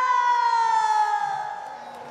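One long, high held note in Korean traditional-style music. It scoops up into pitch, then slides slowly downward and fades.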